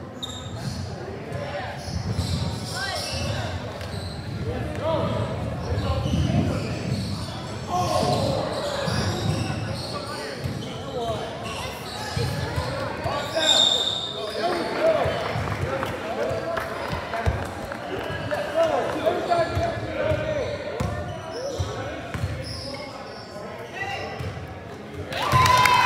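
A basketball bouncing on a hardwood gym floor, with players' and spectators' voices in a large gym hall. A short, high whistle sounds about halfway through.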